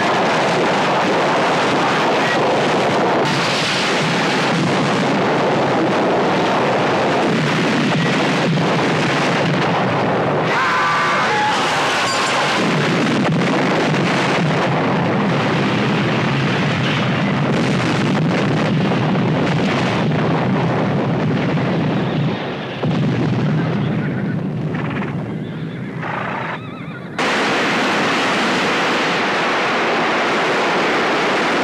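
Loud, continuous blast noise from a string of explosions. A horse whinnies about eleven seconds in.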